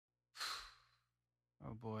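A person's short breathy sigh about half a second in, followed near the end by a brief voiced word.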